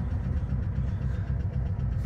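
Volkswagen Beetle's air-cooled flat-four engine idling steadily, heard from inside the cabin as an even low rumble.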